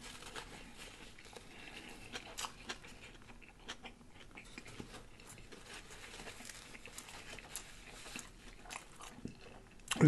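Faint close-miked chewing of a sour pickle, with scattered small wet mouth clicks and crunches. A paper napkin is handled partway through.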